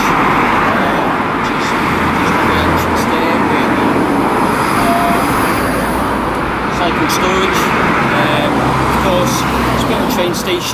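Road traffic on the street beside the station: steady tyre and engine noise of passing cars, loud throughout, with deeper engine rumble swelling twice as vehicles go by.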